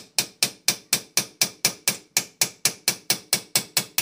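Small ball-peen hammer tapping a steel chisel against a rivet on a Saiga 12 receiver, about four quick, sharp, ringing metal strikes a second, steady throughout and stopping suddenly at the end. The chisel is breaking off the drilled-out head of a trigger-guard rivet so it can be punched out.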